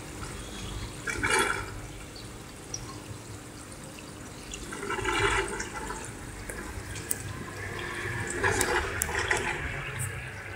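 Water running and gurgling through an aquaponics fish tank and its plumbing, with louder surges of gurgling about a second in, around five seconds, and again near the end.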